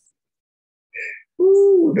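About a second of silence, then near the end a man's voice lets out a brief, drawn-out exclamation of a single held pitch.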